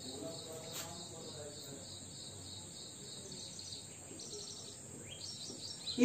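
Quiet room with a faint, steady high-pitched background tone. A marker scratches and squeaks faintly on a whiteboard as a word is written, mostly in the last two seconds.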